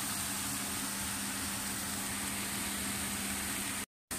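Vegetables sizzling in a frying pan, with a steady low hum under the hiss; the sound cuts off abruptly near the end.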